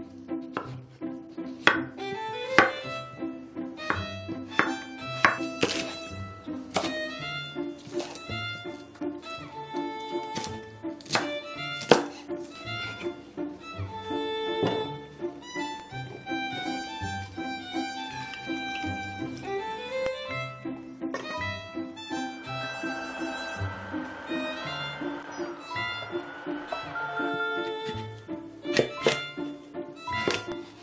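Light, bouncy background music track with an even beat, with scattered sharp thunks of a chef's knife striking a wooden cutting board.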